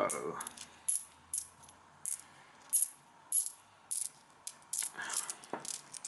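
UK one-penny coins clinking together as they are handled and gathered into a hand. There are about a dozen sharp, separate clinks, roughly two a second.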